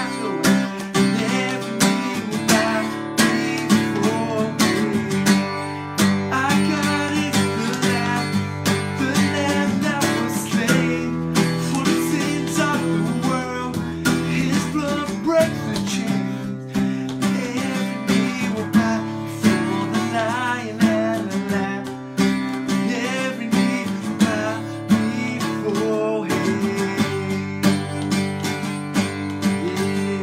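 Acoustic guitar strummed steadily, with a man singing along.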